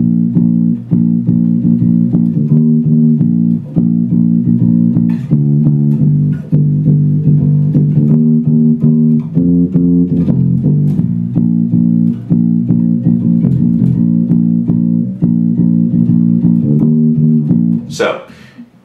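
Four-string electric bass guitar played with the fingers: a continuous, rhythmic bass line of low plucked notes, played from the end of a chorus onward.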